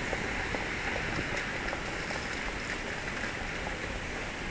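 Steady city street ambience: a constant hiss of traffic and passers-by, with a few faint clicks.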